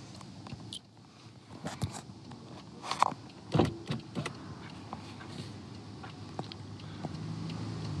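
A phone being handled inside a stopped car, with scattered knocks and clicks as it is turned toward the driver's window. A steady low hum comes up over the last few seconds.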